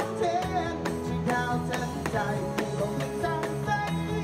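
Live rock band playing a song, with drums played on an electronic drum kit keeping a steady beat under melodic lines.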